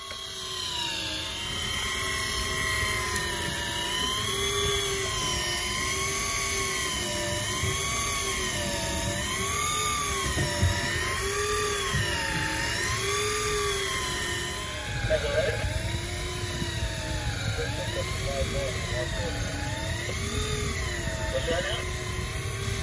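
Electric deep-drop fishing reel's motor whining as it winds line up from depth, its pitch wavering up and down about once a second. A steady low rumble lies underneath.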